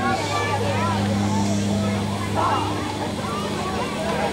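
Indistinct people's voices talking, over a steady low hum.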